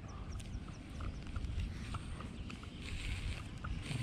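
Baitcasting reel being handled and slowly wound, giving faint scattered ticks over a low steady rumble.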